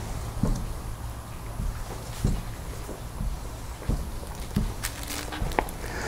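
Felt-tip marker drawing short strokes on a whiteboard, a few faint soft scratches over a low steady room hum.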